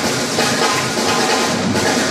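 A live swing jazz band playing, with the drum kit to the fore.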